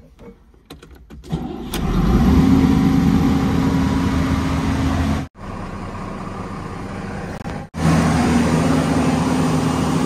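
JCB JS215 excavator's diesel engine started on the key: a few clicks, then it starts about a second and a half in and settles into a steady run. The sound cuts out abruptly twice, around the middle and again a couple of seconds later, and is quieter in between.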